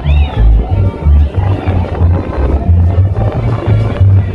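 Loud live dance-band music for a carnival comparsa, driven by a heavy bass line of short repeated notes in a steady rhythm.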